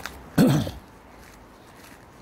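A man clears his throat once, briefly, about half a second in; the rest is faint background.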